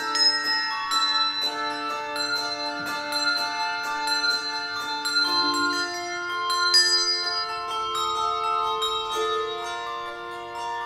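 Handbell choir ringing handbells in a piece of music: many bells struck several times a second, their tones ringing on together as sustained chords that shift every few seconds.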